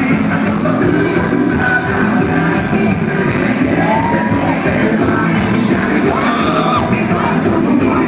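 Live Latin pop band playing loud amplified music with a lead singer, heard from within a concert crowd. A few short whoops rise and fall over the music, around the middle and again near the end.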